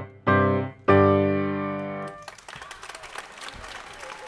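Grand piano playing the closing chords of a short children's piece: two short chords, then a loud final chord held for about a second before it is cut off. Audience applause follows.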